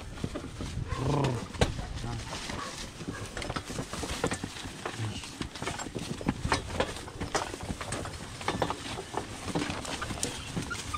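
A horse-drawn cart on the move: a busy, irregular stream of knocks and clicks from the horse's hooves and the wooden cart and harness rattling. A short call from the driver about a second in, and another brief one near the middle.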